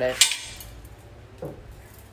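A sharp metallic clink, once, as a chrome-plated Honda Cub 70 exhaust pipe is handled and turned over, followed by faint handling noise.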